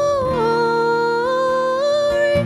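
Church choir voices holding a slow melody in long sustained notes, the pitch stepping down briefly near the start and back up in the second half, over steady low accompaniment.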